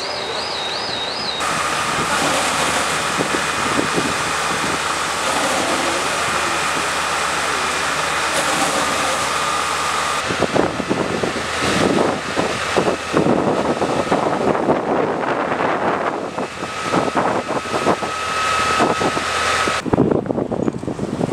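Fire-scene ambience: a steady rushing noise with a faint steady whine from fire-engine pumps and hose jets. From about halfway, gusty wind buffets the microphone. A warbling high siren-like tone cuts off in the first second or so.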